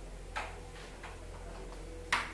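A carrom striker flicked across the board: one sharp click as it strikes a piece about a third of a second in, followed by a few faint clicks as the pieces knock on.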